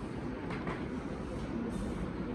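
Steady low rumbling background noise, without speech.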